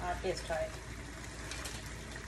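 A few words from a woman, then a steady low hiss from a steaming pan of sauce simmering on a gas stove.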